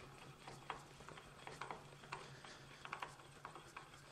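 Faint, irregular light ticks from the table handwheel of a Busy Bee CX601 mill-drill being cranked by hand, over a faint low hum.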